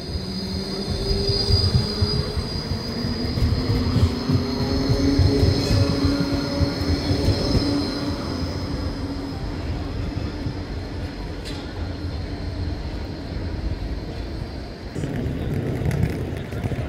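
A green low-floor city tram running past close by, its wheels squealing high and steady on the rails while the electric drive whines, rising in pitch over the first several seconds.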